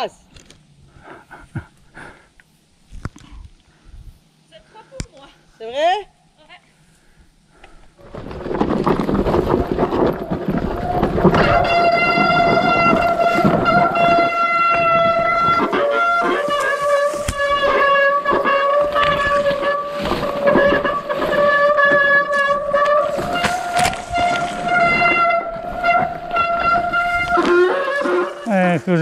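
Mountain bike riding downhill through brush: a loud rush of tyres and scraping vegetation, starting about a third of the way in, under a long, steady squeal from the bike's brakes. The squeal drops in pitch about halfway and rises again near the end. Before that is a quieter stretch with scattered clicks and knocks.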